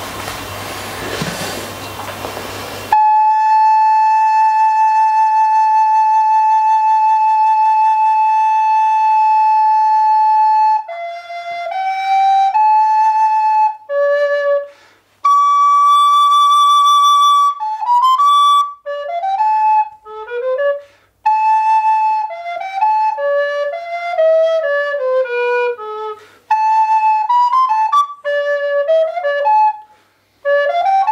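A long vertical flute played solo. After about three seconds of a rushing noise, it holds one long steady note for some eight seconds, then plays a slow melody of held notes and falling runs, broken by short pauses.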